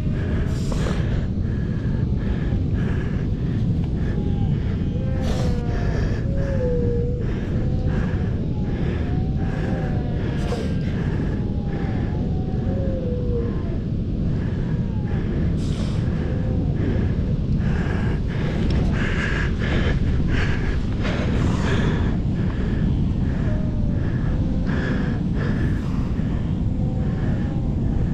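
Steady rushing wind buffeting the microphone, with faint wavering animal calls in the background.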